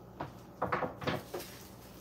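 A few light clicks and knocks from handling a clear plastic case of wooden rubber stamps, with hard plastic and wood tapping together.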